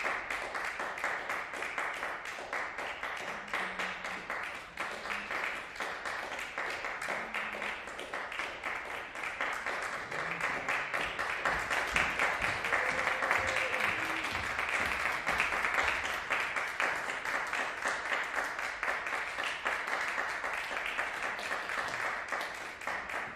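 Audience applauding steadily, swelling louder about halfway through as the performers bow.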